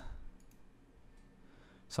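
A few faint computer mouse clicks while a slider is dragged, over quiet room tone.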